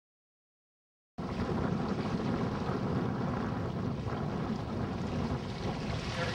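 Silence for about a second, then a steady rush of water running through a shallow creek riffle, with wind buffeting the microphone.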